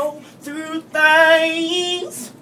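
A man singing unaccompanied in a high voice: a short sung syllable, then one long held note with a slight upward bend from about a second in.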